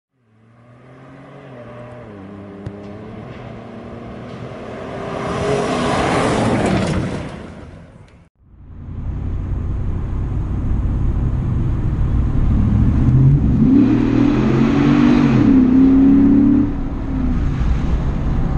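Ford SVT Raptor pickup's engine heard from inside the cab: it revs up and down and swells loud, then cuts off abruptly about eight seconds in. The engine resumes with a steady rumble and climbs in pitch again as the truck accelerates.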